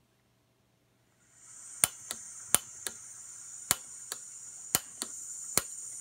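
Gas canister stove with its valve opened: gas hissing steadily from the burner, starting about a second in, while the igniter clicks about nine times without the flame catching.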